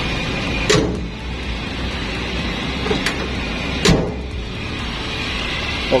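Toyota Kijang Super's four-cylinder engine idling steadily and smoothly, with a few light knocks and a louder thump about four seconds in as the bonnet is shut.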